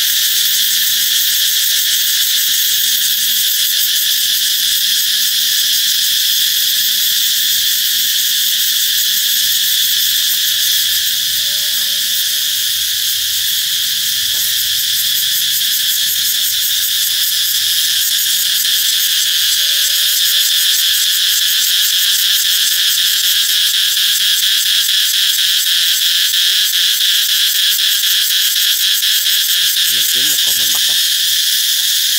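Cicadas in the trees calling in a loud, continuous chorus: a dense, high-pitched buzz with a fast pulsing texture, the song that signals summer is coming.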